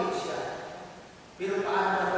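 A man preaching into a microphone in a church. His voice trails off and fades into a pause, then starts again about a second and a half in.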